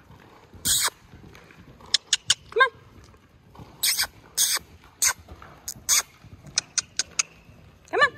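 A horse cantering on a lunge line over indoor arena sand, heard as a string of short, sharp noises at uneven intervals, some clipped and some a little longer.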